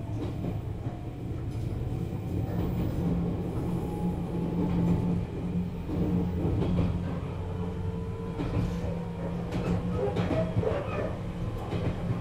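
Running sound of a 413-series electric motor car (MoHa 412): a steady low hum from the MT54 traction motors and running gear, with a faint whine above it and scattered clicks from the wheels over rail joints in the second half.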